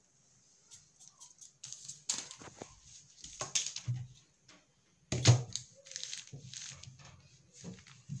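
Crinkled brown pattern paper rustling as it is handled and a ruler is laid across it, in irregular scrapes and rustles, the loudest about five seconds in.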